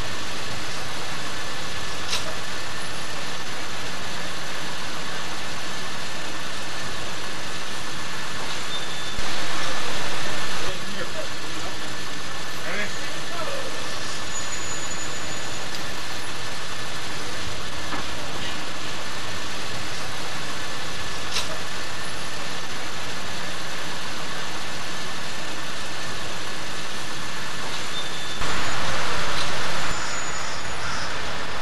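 Steady outdoor background noise with indistinct voices and a thin steady whine, with two short louder rushes of noise, about nine seconds in and near the end.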